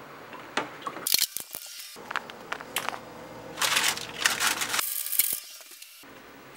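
Irregular bursts of crinkling, crackling noise with sharp clicks. The sound cuts out briefly twice, around one and a half seconds in and again near the end.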